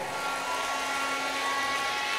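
Steady background hiss with a few faint steady hums underneath, the room and sound-system noise of a large hall in a pause between speech.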